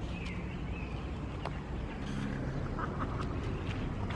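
A badminton racket strikes a shuttlecock with a single sharp tick about one and a half seconds in, over a steady low outdoor rumble. There are a few short nasal calls, one just after the start and a small cluster near three seconds.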